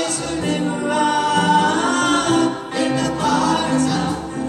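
Small gospel vocal group singing in harmony, with held notes.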